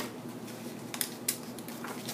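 Double-sided cardstock being folded and creased by hand: a few faint paper rustles and taps.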